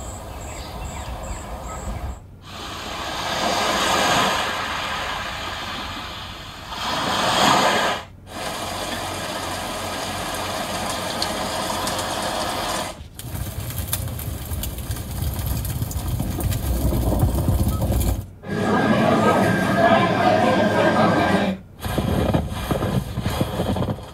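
Recorded nature soundscapes from a 2022 Genesis G70's built-in Sounds of Nature feature, heard through the car's speakers inside the cabin. The tracks are switched every few seconds, each change marked by a brief gap. They include a lively forest, a rainy day and a snowy village.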